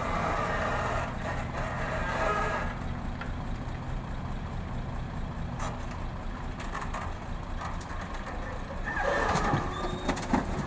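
Diesel engines of a crawler excavator and a loaded dump truck running steadily, with a whine from the excavator's hydraulics in the first few seconds as the boom swings. Near the end, a rush of rock and dirt begins pouring from the bucket into the truck's steel bed.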